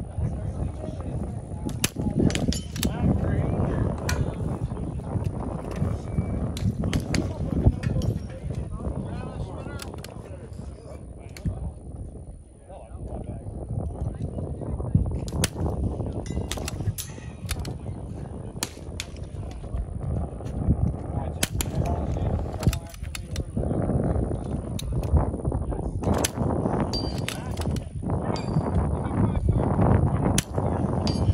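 Rimfire rifle shots fired during a timed course of fire: short, sharp cracks, well over a dozen, irregularly spaced from under a second to several seconds apart, over a steady low rumble.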